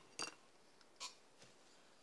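Near silence: room tone, broken by two brief soft sounds, one about a quarter of a second in and one about a second in.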